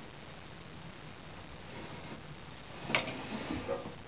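Compound bow in a bench bow press being handled while its bowstring is put back on: one sharp click about three seconds in, then a few softer knocks.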